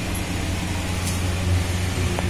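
Steady low hum with an even hiss over it, unchanging throughout.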